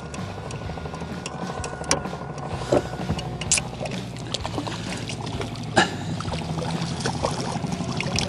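A hooked kokanee salmon splashing at the water surface as it is reeled in to the boat: scattered short splashes, the sharpest about two, three and a half and six seconds in, over a steady low hum.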